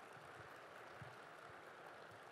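Near silence: faint, steady room noise of a large hall.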